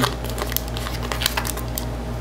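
Foil wrapper of a Pokémon trading-card booster pack crinkling with scattered sharp crackles as fingers tug and tear at it; the pack is proving hard to open.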